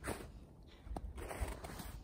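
Footsteps in snow: a few soft steps with a faint rasping crunch between them.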